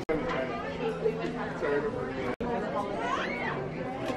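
Indistinct chatter of people talking in a shop, broken by a sudden short cut in the sound about halfway through.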